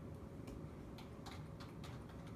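Keystrokes on a computer keyboard: about six short key clicks, mostly in the second half, over a low steady room hum.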